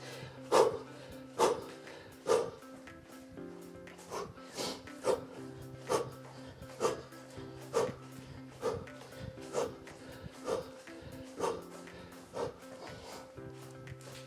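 Background music with held notes, over a man's short, forceful exhalations during mountain climbers. The huffs come in a loose rhythm of about one a second or a little faster.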